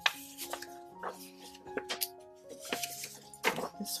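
Soft background music of held notes, over the crackle and rustle of a sheet of scrapbooking paper being handled and folded along its score lines. There is a sharp paper snap right at the start and another about three and a half seconds in.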